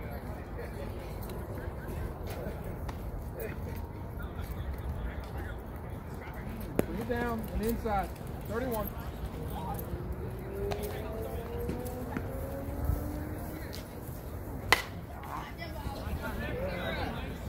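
Outdoor softball-field ambience with a few distant shouted calls from players, then near the end a single sharp crack of a slowpitch softball bat hitting the ball.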